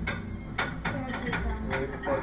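Several short clinks of utensils against plates and dishes as food is served, under quiet table chatter.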